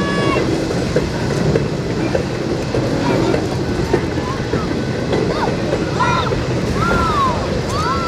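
Loaded freight train flatcars rolling past at speed, a steady rumble and clatter of steel wheels on the rails.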